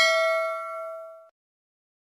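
Notification-bell chime sound effect from a subscribe animation: a bright ding that rings loudly at first, fades, and cuts off just over a second in.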